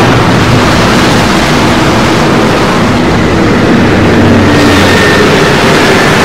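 Loud, steady rocket-engine roar of a spaceship sound effect, a dense even rush of noise with a low hum underneath.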